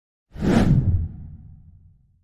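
Logo-intro sound effect: a sudden whoosh with a low rumble under it, starting about a third of a second in and dying away over about a second and a half.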